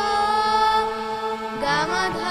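A girl singing a Sufi song to her own harmonium over a steady drone: a long held note, then her voice glides upward into an ornamented, wavering phrase near the end.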